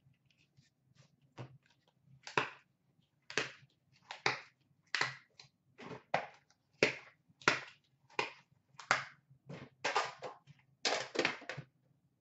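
Trading cards and their box being handled on a glass counter: a string of about twenty short, sharp snaps and slaps, roughly one or two a second.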